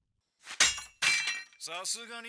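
Sound effect on the anime's soundtrack: two sudden crashing hits, the second with a ringing tail. A man's voice starts speaking near the end.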